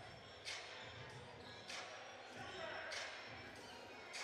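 A basketball bouncing on a hardwood gym floor during play: a handful of short, sharp bounces at uneven intervals, faint, over a low background murmur in a large hall.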